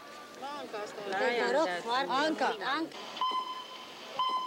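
Several high-pitched children's voices talking over one another in a gym hall, their pitch swooping up and down. About three seconds in they give way to a steady high held tone.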